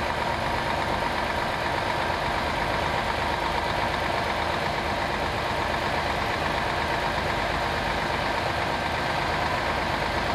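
A crane's engine running steadily as it lowers a suspended load, a constant drone with a few steady tones over it.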